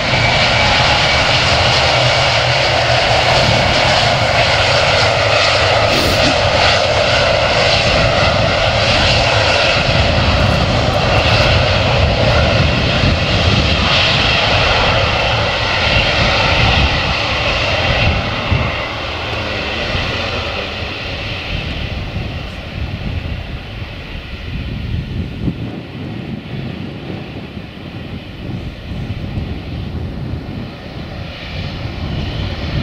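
Jet engines of a Boeing 757-200 airliner running at taxi power as it rolls along the runway and turns at its end. The sound is loud at first and grows fainter from about two-thirds of the way in as the aircraft moves away.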